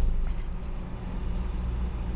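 A catamaran's engine running steadily while motoring along, a constant low drone under a haze of wind and water noise.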